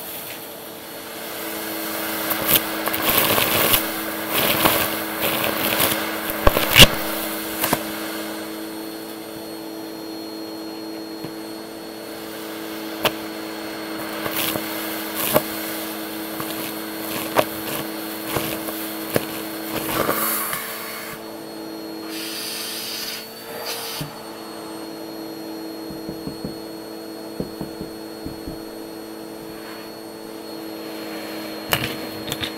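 Vacuum cleaner running, its hose nozzle sucking up a pile of small hard debris from carpet: a steady motor hum under frequent crunching clicks and rattles as bits shoot up the hose. The crunching is densest in the first several seconds and again around the middle. It thins out about two-thirds of the way through, when the motor tone shifts briefly.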